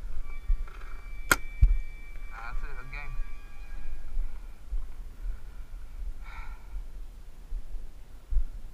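One sharp paintball crack about a second in, followed by a soft low thud, with faint shouted voices of other players at a distance now and then.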